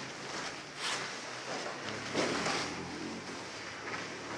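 Rustling and scuffing of cotton gis and bodies shifting on foam mats as jiu-jitsu partners grapple on the floor, with a louder swell of rustle a little past the middle.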